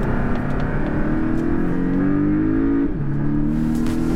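Porsche 718 Cayman's turbocharged flat-four pulling hard under acceleration, heard from inside the cabin: the engine note climbs steadily, drops sharply near three seconds in as it shifts up a gear, then starts climbing again.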